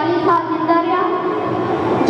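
Sustained musical tones held at steady pitches, stepping up or down a few times, with a reedy, drawn-out quality rather than broken speech.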